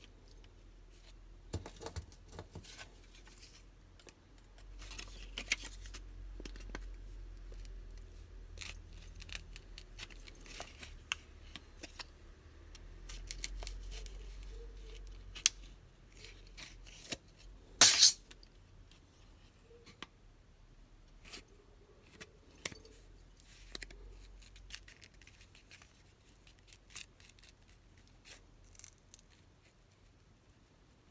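Plastic back cover of a Samsung Galaxy A20 being pried and worked loose from the phone's frame by hand: scattered small clicks, scrapes and handling noise, with one loud sharp double click a little past halfway.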